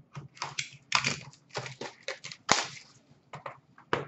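Trading cards being handled by hand on a glass counter: a rapid, irregular run of short clicks, slaps and rustles as cards are flipped and set down, the sharpest one about two and a half seconds in.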